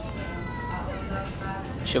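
Supermarket background: a low steady hum with a faint distant voice.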